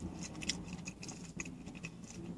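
Faint chewing of a bite of a pretzel-bun hot dog, with a few small mouth clicks.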